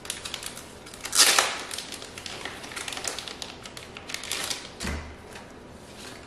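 Paper and plastic packaging crinkling and rustling as an instruction sheet is taken from its plastic bag and unfolded by hand: a steady patter of small crackles, a louder crackle about a second in, and a soft low thump late on.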